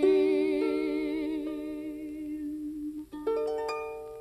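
The close of a song: a woman's voice holds a final note with vibrato over harp, ending about three seconds in, and then a last rolled harp chord rings out and fades away.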